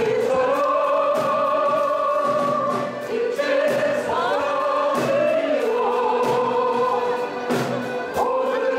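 Piano accordion ensemble playing long held chords with a steady pulse of short accents, with the players singing along.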